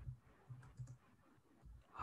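A few faint, scattered computer keyboard key clicks as text is typed.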